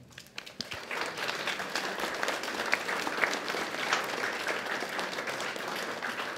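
Audience applauding, many hands clapping, building up within the first second and then holding steady.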